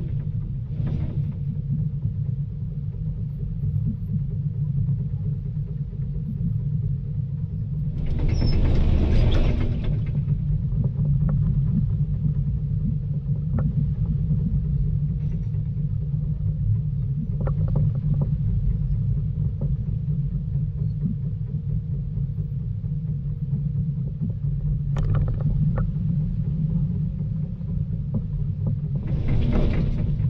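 Volvo EC220 DL excavator's diesel engine running steadily with a deep rumble, broken by short louder noisy surges, the biggest about eight seconds in and lasting about two seconds.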